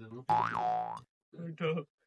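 Cartoon-style comedy sound effect: a springy boing whose pitch rises and then drops, lasting under a second, followed by a short spoken word.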